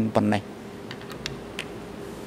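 A man's voice speaking for the first half second, then a few faint, short clicks over a steady low electrical hum in a quiet courtroom.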